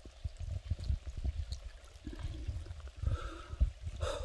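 Rain and wind on a handheld phone microphone while walking in a downpour: a faint watery hiss with many soft, irregular low thuds.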